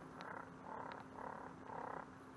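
Faint frogs calling from the canal banks, short repeated calls about two a second.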